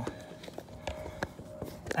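A run of about half a dozen light, irregular knocks and taps, the handling and movement noise of the camera and a plastic jug being shifted about, with a faint steady hum underneath.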